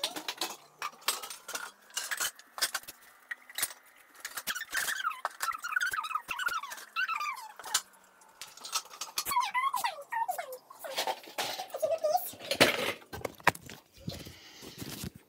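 Bottles and kitchenware clinking and knocking as they are handled and set down on a counter, with a run of high wavering squeaks in the middle and again later.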